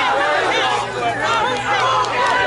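Many voices talking and calling out over one another at once: overlapping chatter from a group of people, with no single clear speaker.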